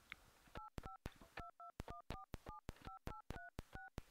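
Push-button telephone keypad sounding its touch-tone beeps as the number keys are pressed: about eleven short two-note beeps in quick, uneven succession, each with a key click, faint.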